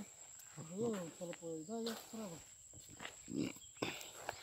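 A person's voice, faint, in short spoken phrases.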